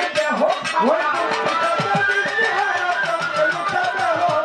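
Live Bengali baul folk music: a violin carries the melody over a quick run of drum strokes that dip in pitch.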